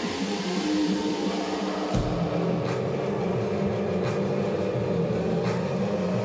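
A live band with electric guitar, drum kit and keyboards playing an instrumental tune. A deep bass line comes in suddenly about two seconds in, with a few sharp hits after it.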